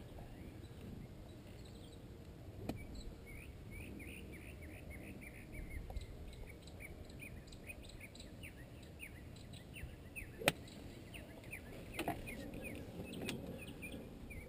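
Faint bird chirping, a steady run of short falling chirps about two a second. About ten seconds in comes one sharp crack: a golf club striking the ball.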